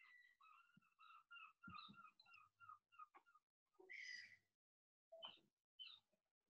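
Near silence, with faint, short high-pitched chirps now and then.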